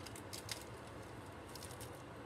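Faint rustling and a few light ticks of paper craft packaging being handled and opened by hand.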